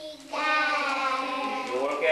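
Young children's voices in unison, one long held call that starts about a third of a second in.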